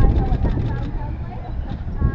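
Indistinct talking over a strong, steady low rumble.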